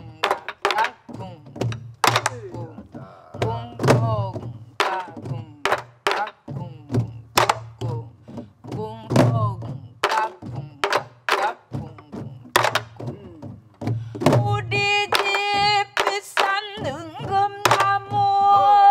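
A group of sori-buk (pansori barrel drums) played together in the jungjungmori rhythm, sharp stick strikes about twice a second in a lilting three-beat feel. A woman's voice runs over the drumming and turns to long held sung notes near the end.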